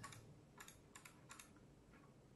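A few faint, irregular clicks from a laptop keyboard as the user works the computer, against quiet room tone.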